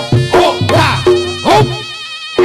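Reog Ponorogo gamelan accompaniment: a slompret shawm holds a nasal, buzzing high note over drum strokes about every half second. The drums drop out near the end, leaving the held shawm note.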